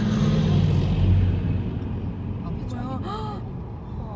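Low, steady engine drone of a tracked armored military vehicle heard at close range from a passing car, loudest about a second in, then fading. Brief voices come in near the end.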